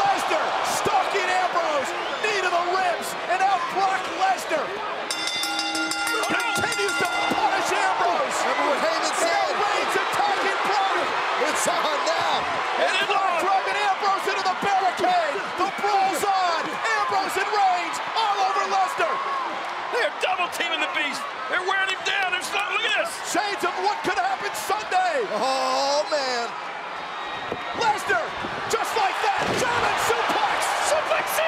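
Large arena crowd yelling and screaming, many voices overlapping, with repeated sharp thuds of wrestlers' bodies slamming into the ring apron, mat and barricade during a ringside brawl.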